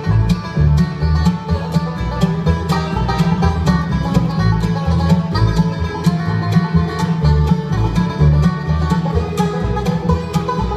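Live bluegrass band playing an instrumental passage: banjo picking, fiddle, mandolin and acoustic guitar over an upright bass keeping a steady pulsing beat.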